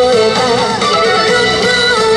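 Loud recorded yosakoi dance music played over loudspeakers: a sliding, bending melody line over a dense, steady backing.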